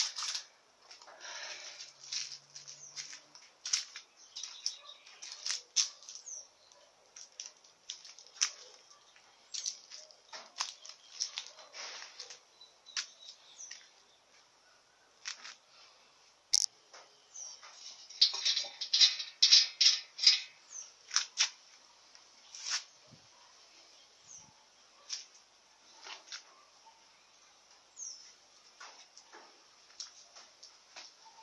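Small birds chirping, short high calls scattered irregularly, with a dense run of rapid chirps about two-thirds of the way through.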